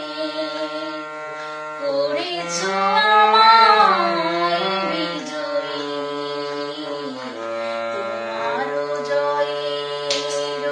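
A woman singing a Bengali song in long, held notes, rising to a louder, higher passage about three seconds in and falling away again. Beneath the voice a steady sustained instrumental accompaniment holds its notes, shifting a few times.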